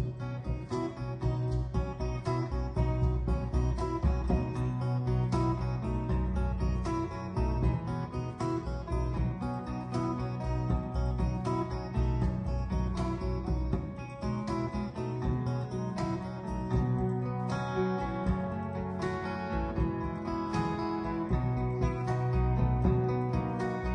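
Instrumental passage of a slow song played by a live band, led by strummed guitar over sustained low notes.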